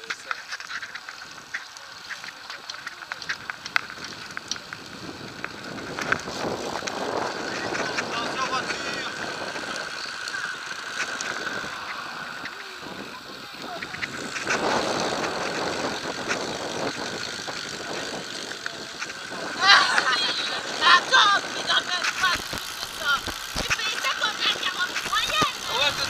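Road bicycles riding in a group: wind rushing over the microphone and tyres on tarmac, with indistinct riders' voices about twenty seconds in.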